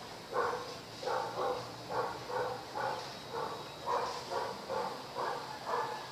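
Dog barking repeatedly in short, evenly spaced barks, about two a second.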